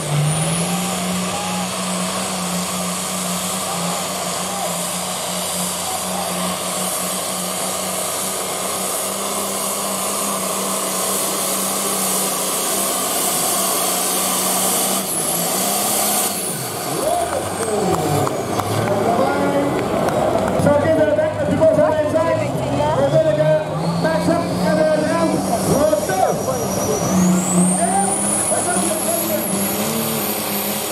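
A farm pulling tractor's diesel engine held at full throttle under load during a pull, steady for about half the time, then falling away as the pull ends. Near the end another tractor's engine revs up, with a high whine rising over it.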